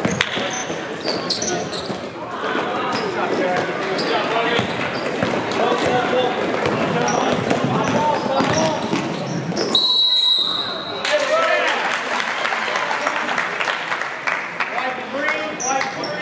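Live high-school basketball in a gym: a ball dribbling, sneakers squeaking and a steady babble of player and crowd voices. About ten seconds in, a referee's whistle blows one steady blast of about a second, stopping play.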